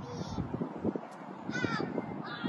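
A bird calling outdoors: two short, harsh calls, one right at the start and one about a second and a half later.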